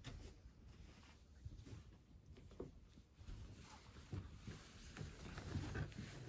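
Faint room tone with scattered soft knocks and shuffling of a person moving about. It grows louder in the last couple of seconds as they come to sit at the piano bench.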